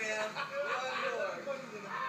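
A person's voice in drawn-out cries that rise and fall in pitch.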